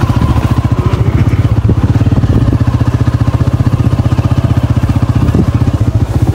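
Small motorcycle engine running steadily under way, a fast even putter with a strong low throb.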